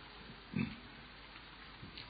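Faint hiss in a pause of a man's recorded talk, with one short low breath-like noise about half a second in.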